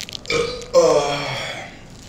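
One long burp from a man who has just gulped fizzy orange soda, starting about a third of a second in and lasting over a second.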